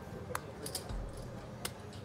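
A few faint, sharp clicks of poker chips being handled at the table, over a low steady room background.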